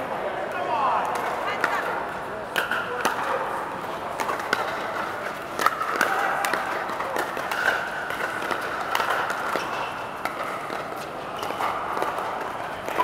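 Pickleball paddles striking plastic balls: sharp pops at irregular intervals from several courts at once, inside a large air-supported dome, over a background of players' voices.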